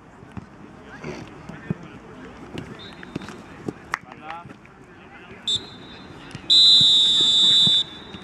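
Referee's whistle: a short blast about five and a half seconds in, then a long, loud blast of over a second near the end. Before it come a few dull kicks of the football.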